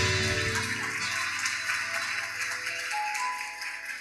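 Accordion and keyboard holding the song's final chord, which fades away over about three seconds, with a few faint high notes near the end.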